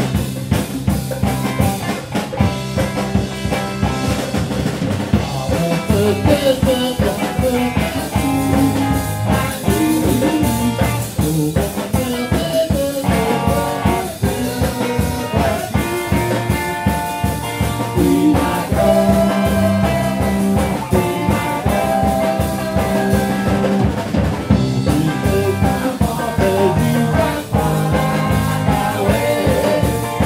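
Live garage rock band playing a song at a steady beat: electric guitar, bass guitar and drum kit, with bongos struck with drumsticks.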